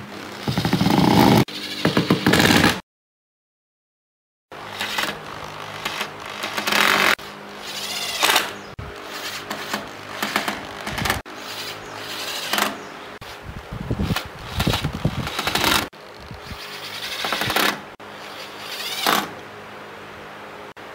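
Makita cordless impact driver driving screws through metal hinges into pine, in short repeated bursts a second or two apart. A few seconds of dead silence fall about three seconds in.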